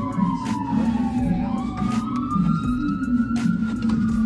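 An emergency-vehicle siren wailing: its pitch slides slowly down, then climbs back up and starts to fall again, over background music.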